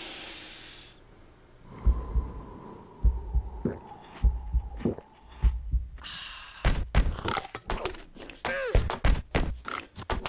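Deep thuds at uneven intervals under a thin steady tone for a few seconds. From about six seconds in, a quicker run of sharp hits follows, with a falling sweep in pitch.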